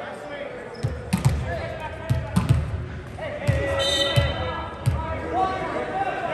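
A volleyball bouncing on a hardwood gym floor: about nine thuds at uneven spacing, echoing in the large hall, with voices under them.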